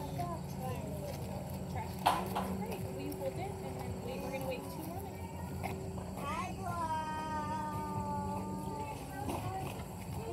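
Outdoor mix of faint children's chatter and nearby house-framing work over a steady low hum: a single sharp knock about two seconds in, and a long, slightly falling held tone for about two seconds in the second half.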